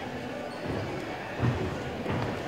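Echoing gymnastics-hall background of distant voices and activity, with one loud thud about one and a half seconds in.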